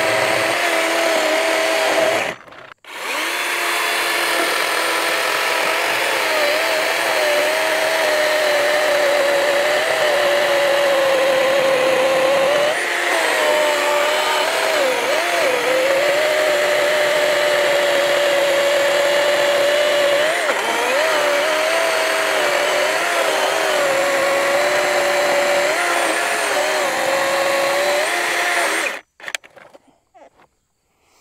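DeWalt DCCS677 60V 20-inch brushless battery chainsaw cutting through a log: a steady motor and chain whine whose pitch wavers under load in the cut. It stops briefly about two and a half seconds in, then starts again, and stops about a second before the end.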